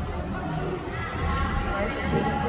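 Indistinct background voices echoing in a large hall, over a low rumble with dull thuds.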